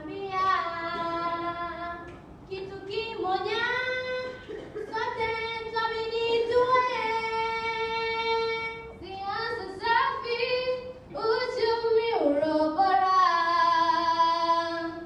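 Girls' voices singing a song in long, held phrases with short breaks between them.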